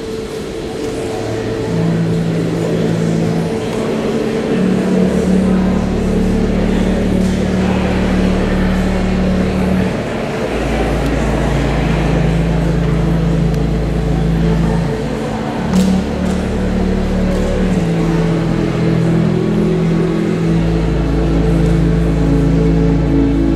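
Church pipe organ playing recessional music just after the wedding kiss: sustained chords over deep pedal notes that change every few seconds, with crowd noise underneath.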